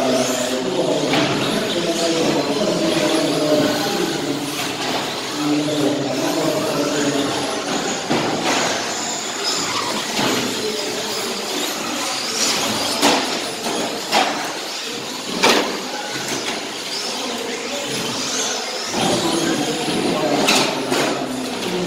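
Radio-controlled 2wd short course trucks racing, their motors whining up and down in pitch as they accelerate and brake around the track. Several sharp knocks come in the second half.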